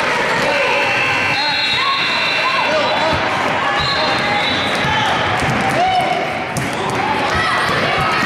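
A basketball being dribbled on a gym's hardwood floor, with repeated thumps, short squeaks of players' shoes on the floor and voices of players and spectators around, all echoing in a large gym.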